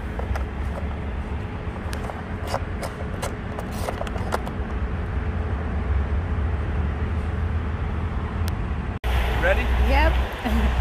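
A plastic drain plug being screwed back into a hard-sided cooler, giving a string of short, light clicks in the first few seconds over a steady low rumble. The sound changes abruptly near the end.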